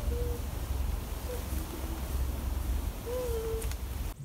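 Steady low rumble of wind on the microphone, with a few faint, low hooting bird calls over it; the longest call comes near the end.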